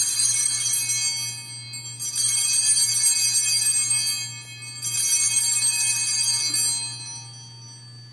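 Altar bells rung three times as the chalice is elevated at the consecration of the Mass. Each ringing is a bright cluster of high bell tones that fades away, roughly two to three seconds apart, with the last dying out near the end.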